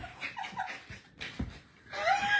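Soft, breathy laughter with a few short, faint squeaky sounds early on, and a low thump about one and a half seconds in.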